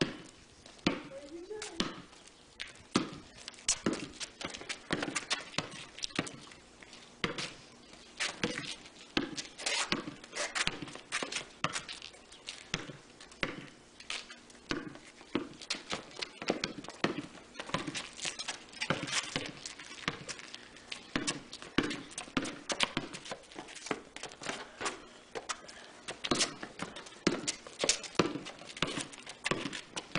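Basketball dribbled on a concrete driveway: a long, uneven run of sharp bounces.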